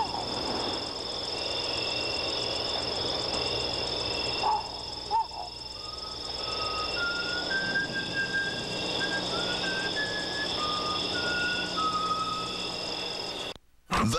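Soundtrack of a wordless TV advert: steady high electronic tones with a pulsing beep-like tone and a slow run of held notes that step up and back down in the middle. It cuts off suddenly just before the end.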